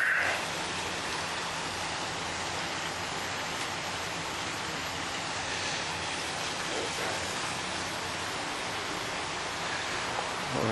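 A steady, even outdoor hiss with no distinct events.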